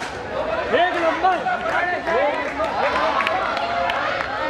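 A single sharp crack as a cricket bat strikes the ball, followed by several voices shouting and cheering over each other, swooping up and down in pitch, as the shot goes for six.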